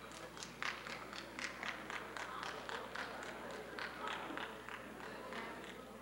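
Scattered sharp taps, a few a second and irregular, over the faint murmur of an audience talking.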